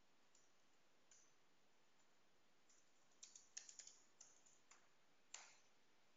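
Faint computer keyboard keystrokes: a quick run of key clicks about three seconds in, then a single sharper key press near the end.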